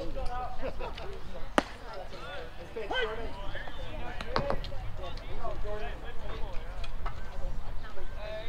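Voices of players and spectators chattering and calling out around a baseball field, with two sharp knocks, one about a second and a half in and another past four seconds.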